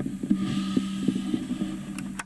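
A ukulele with a clip-on pickup, played through a Roland amplifier, sounds a faint steady low note. Irregular light taps and clicks of handling noise come through the amp with it.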